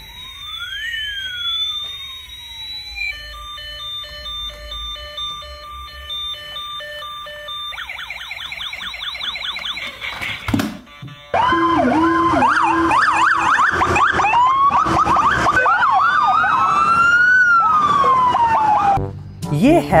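Electronic toy police car siren: a repeating beeping pattern with sweeping tones, then a fast warbling yelp. About eleven seconds in it gives way to louder real police car sirens, several wailing up and down at once over the rumble of traffic.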